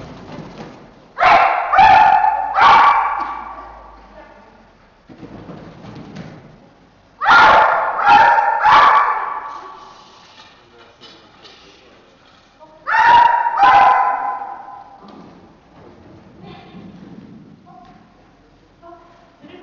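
Dog barking in three bursts of two or three barks each, about six seconds apart, echoing in a large indoor hall.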